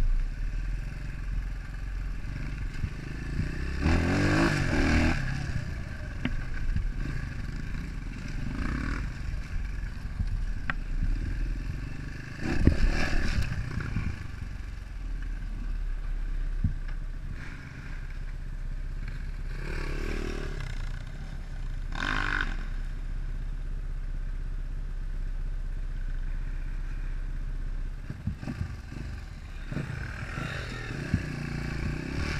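An enduro dirt bike's engine heard from on the bike, running along a rough trail with several brief swells of throttle, with clattering and scraping from the bike over the ground; it runs more steadily near the end.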